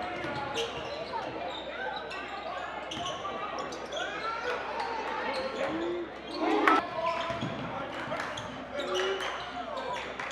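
Live basketball game sound in a large gym: a ball bouncing on the hardwood court, sneakers squeaking, and players and spectators calling out, with a louder burst about two-thirds of the way through.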